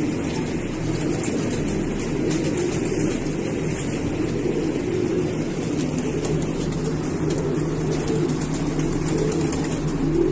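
Many pigeons cooing together in a loft, blending into a steady low murmur, with a constant low hum underneath.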